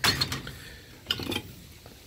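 Loose metal truck parts being handled and shifted in a pile: a sharp clank at the start, a second clatter of metal on metal about a second in, and a few light clinks between.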